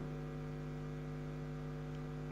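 Steady electrical mains hum on the audio line: a low, unchanging tone with a stack of overtones above it.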